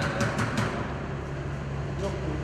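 Rapid knocking on a closed door, about five knocks a second, stopping a little over half a second in, over a steady low hum.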